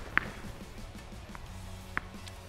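A tennis ball dropping from a serve toss onto a tennis-ball-can lid on the court: a sharp tap just after the start and another near the end, over quiet background music.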